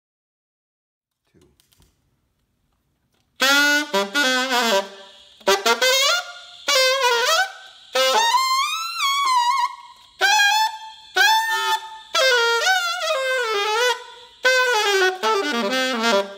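Alto saxophone played solo on a Drake mouthpiece: after about three seconds of silence, a string of short melodic phrases with brief breaks between them, the notes sliding up and down in pitch.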